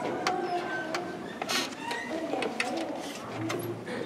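Concert-hall noise while the band is not playing: scattered clicks and knocks, as of instruments and chairs being handled, with faint murmuring voices.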